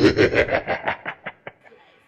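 A person laughing: a quick run of 'ha' pulses that fade away over about a second and a half.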